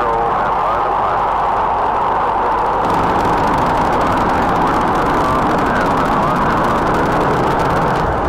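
Redstone rocket engine firing at liftoff: a loud, steady rush of noise, with a brighter hiss joining about three seconds in.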